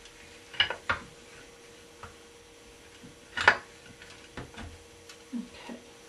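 Handling clicks and knocks of wooden spinning-wheel parts as the flyer and bobbin are lifted off a Saxony wheel: a few light clicks near the start and one sharper knock about three and a half seconds in.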